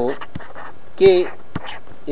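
A man's voice says two short words ('so', 'K') over steady background noise, with a few faint clicks between the words.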